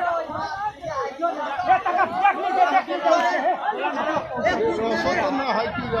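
Several people talking over one another: group chatter.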